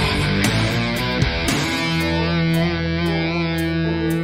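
Suhr electric guitar playing over a backing track with drums: a quick run of notes for the first second and a half, then a long held note with vibrato from about two seconds in.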